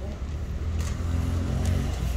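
A motor vehicle's engine rumbling close by, growing louder through the second second as it passes. A few faint clicks of a kitten crunching dry kibble sound over it.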